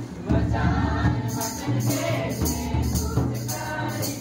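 Live folk dance music: two-headed barrel drums beaten in a steady repeating rhythm, with jingling percussion joining just over a second in, under group singing.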